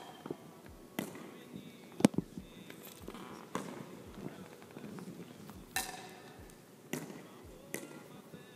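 Pickleball paddle striking a plastic wiffle ball and the ball bouncing on a hardwood gym floor: about six sharp taps, irregularly spaced, echoing in the large gym.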